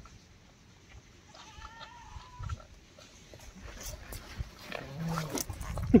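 A calf bleats once, a wavering call of about a second. A few faint knocks and scuffles follow near the end.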